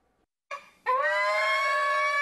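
A pig squealing: a short cry about half a second in, then one long, high-pitched squeal held steady from about a second in, as the pig protests being held down for an injection.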